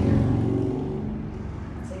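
A low rumble with a humming tone in it, loudest at the start and fading away over about two seconds.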